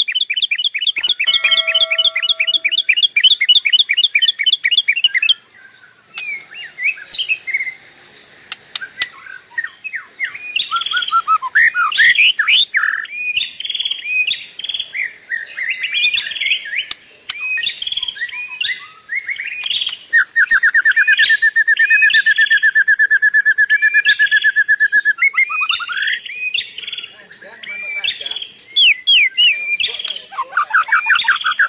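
Birds chirping and trilling: a fast trill for about the first five seconds, then scattered short chirps, and a long, even trill from about twenty to twenty-five seconds.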